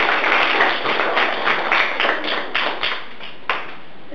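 A small group clapping hands in applause for a correct quiz answer, dense at first and dying away about three seconds in, with one last clap shortly after.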